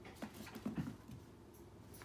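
Dachshund puppy playing on a hardwood floor: a few short taps and scuffles in the first second, then little sound.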